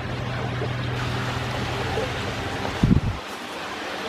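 A steady low mechanical hum over a rushing noise. About three seconds in comes a short low thump, after which the hum stops and only a quieter hiss remains.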